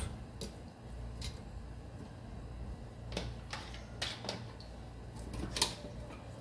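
Light, scattered clicks and knocks of raw pork loin pieces being pushed and arranged by hand in a plastic air fryer basket, over a low steady hum.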